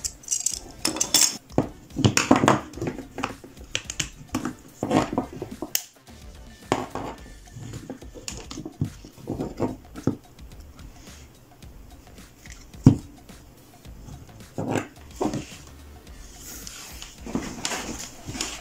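Plastic parts of a hot glue gun handled and pried apart on a wooden desk: irregular clicks, knocks and rattles, with one sharp knock about two-thirds of the way through.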